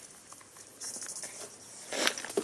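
Insects calling in the bush: a high, rapidly pulsing trill that starts up again a little under a second in.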